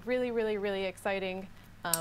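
Speech only: a woman's voice talking.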